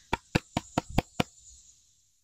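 Six quick, sharp knocks on a small birdhouse, about five a second, as it is tapped to shake earwigs out of it.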